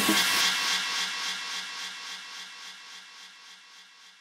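The end of a glitch hop track: the beat stops and a hissy synth wash with a faint low note pulsing about four times a second fades steadily away.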